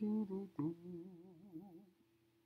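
A man humming: a few short notes, then a longer note with a wavering pitch that fades out just before the end.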